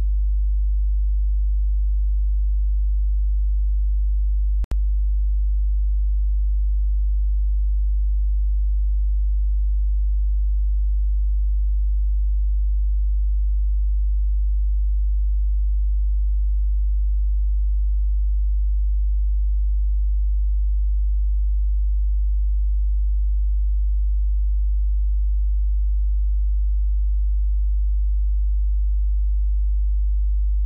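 A steady low hum, one deep unchanging tone, broken once by a brief click about four and a half seconds in.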